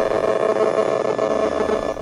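Handheld electromagnetic-radiation detector turning a cell phone tower's signal into sound: a steady, even static hiss with faint steady tones running through it.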